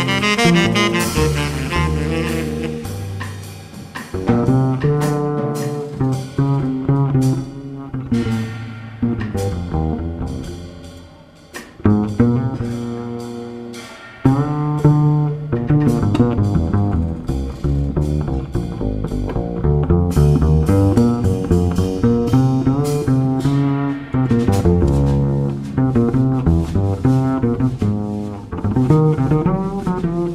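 Double bass solo in a slow jazz ballad, a run of pitched notes each with a sharp start and decay, with light drum kit and cymbal accompaniment. A tenor saxophone phrase ends just at the start.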